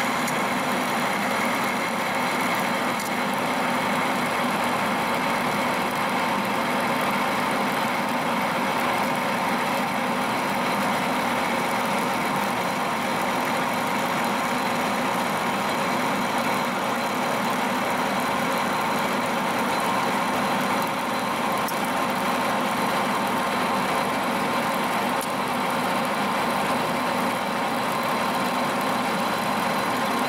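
Metal lathe running steadily under a turning cut, a carbide insert cutting a steel bar, with a few steady whining tones over the even cutting and machine noise.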